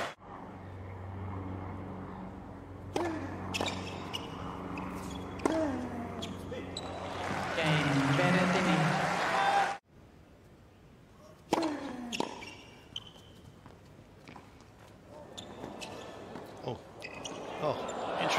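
Tennis ball being struck by rackets and bouncing on a hard court during a rally, heard as sharp separate knocks from about ten seconds in, the first one joined by a short player's grunt. Before that there are crowd voices over a low steady hum, and the sound cuts out briefly just before the rally.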